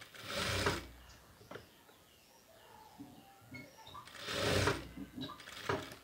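Sewing machine stitching a puff sleeve onto a blouse in two short runs, one just after the start and one about four seconds in, each lasting under a second. A few short clicks come between the runs.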